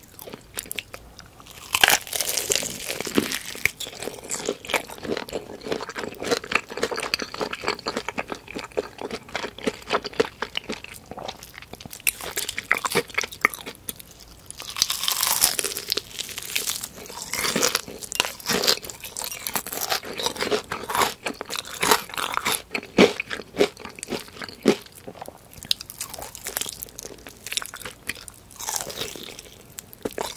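Bites into crispy deep-fried chicken batter and chewing, the crust really crunchy, with dense crackling throughout. Louder crunching bites come about two seconds in, about halfway through, and near the end.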